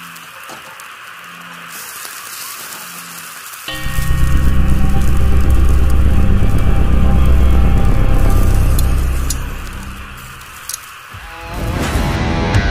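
Intro sound design for a logo animation: a steady hiss, then about four seconds in a loud, deep rumbling boom that holds for several seconds and fades away. Near the end, music begins.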